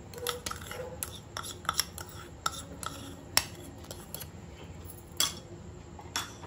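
Utensils clinking and knocking against a cooking pan as semolina is added to simmering milk, with irregular light clicks and two sharper knocks, one about three and a half seconds in and one just after five seconds.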